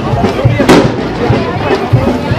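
A single sharp bang about two-thirds of a second in, over band music with a steady drum beat and the voices of the crowd.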